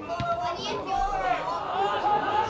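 Several high-pitched voices shouting and calling out around an outdoor football pitch during play, with one short knock early on.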